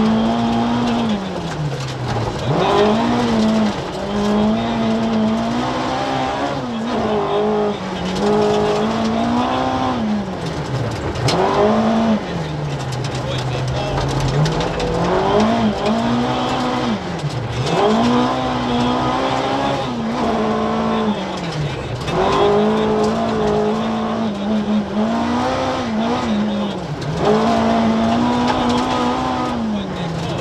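Ford Escort RS 2000 rally car's Cosworth BDA twin-cam four-cylinder engine, heard from inside the cabin, revving hard on a gravel stage. Its pitch climbs and then drops again and again as the car changes gear and lifts off between bends.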